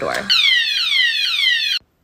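Hanging door-handle alarm on its alarm setting, set off as the door is opened: a loud electronic siren of rapidly repeated falling whoops, which cuts off suddenly near the end.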